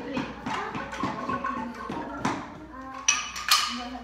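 Loose, unstructured instrument sounds: a few short pitched notes among clicks and wooden taps, with two sharp, loud strikes about three and three and a half seconds in.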